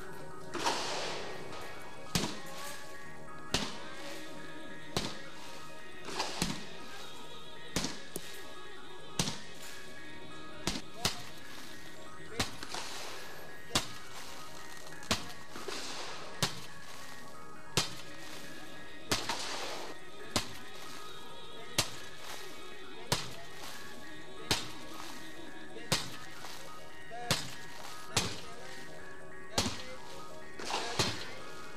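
Heavy blows striking a laminated bullet-resistant glass panel again and again, roughly one every second and a half, over background music.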